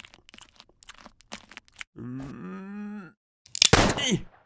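Cartoon sound effects: a run of small crunches and clicks like a bear chewing on pebbles, then a low, drawn-out groaning voice for about a second. Near the end a sudden loud, sharp burst.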